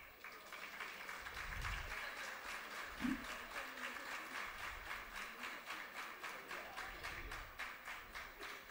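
Audience applauding steadily, with a brief pitched sound about three seconds in.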